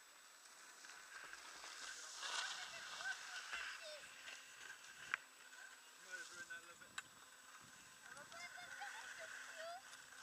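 Faint hiss of skis sliding on snow, picked up by a helmet-mounted camera. It swells for a second or so before midway, with two sharp knocks and a few short squeaks.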